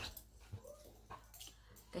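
Small pet dog giving one faint whimper, with a couple of soft bumps.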